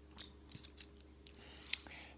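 Small plastic Lego pieces being handled: about five short, light clicks, the sharpest near the end.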